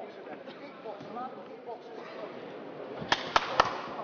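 Three sharp smacks in quick succession, a little over three seconds in, over the low murmur of an arena crowd.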